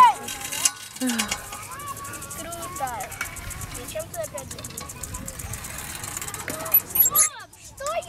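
Children's voices chattering and calling, with a brief loud noise about seven seconds in.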